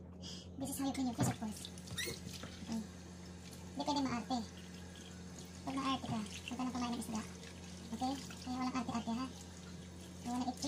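Kitchen tap running into a stainless steel sink as a whole fish is rinsed under it by hand, with a steady low hum underneath.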